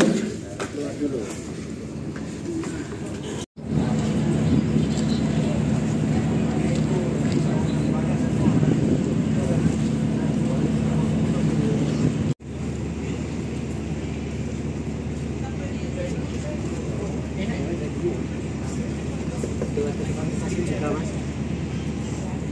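Steady low hum on board a docked passenger ship, with people talking in the background; the sound cuts off abruptly twice and resumes at a slightly different level.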